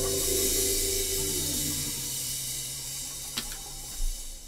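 The end of a live band's song: held keyboard and guitar notes fade out under a steady hiss, the higher notes gone after about two seconds and one low note lingering. A single click about three and a half seconds in.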